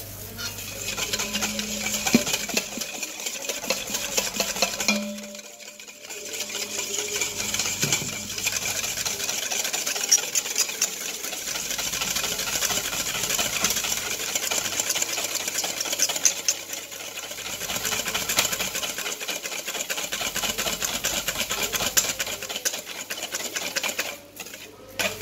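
Wire balloon whisk beating a dressing in a large stainless steel bowl, working the oil in: a rapid, continuous clatter of the wires against the metal, with a brief pause about five seconds in.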